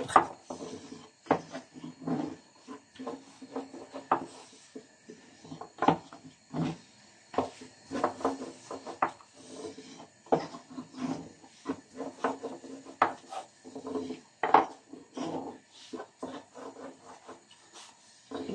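A long, thin wooden rolling pin (oklava) rolling and rubbing over a thin sheet of börek dough on a floured board, with irregular strokes and light wooden knocks about once a second as the dough is rolled out thin.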